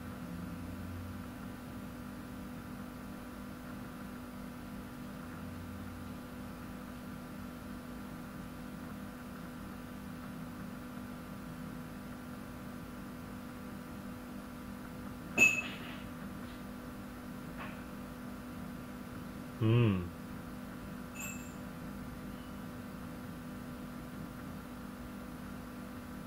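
Steady low room hum made of several fixed tones. A sharp click about fifteen seconds in, and a short falling voiced sound from a person about twenty seconds in.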